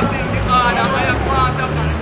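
Indistinct men's voices talking heatedly over the steady low hum of an idling vehicle engine.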